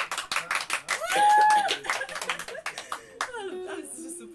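A small audience clapping, with one held high whoop rising above the applause about a second in. Near the end the clapping dies away and plucked notes on a small acoustic string instrument begin.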